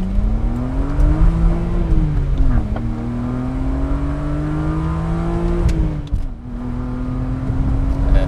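BMW 1 Series (E8X) engine heard from inside the cabin, pulling hard through the gears of its manual gearbox. Its pitch climbs, falls sharply at an upshift about two and a half seconds in, climbs again, and falls at a second upshift about six seconds in before holding steadier.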